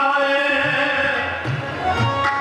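Gurbani kirtan: a man singing a shabad, holding a long steady note, with tabla strokes joining in the second half.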